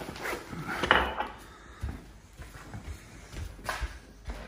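A few knocks and rustles of household items being handled, the loudest knock about a second in and a short cluster of taps near the end.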